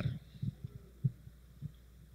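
A handheld microphone picking up handling noise as it is moved: a few soft, irregular low thumps over a steady low electrical hum from the sound system.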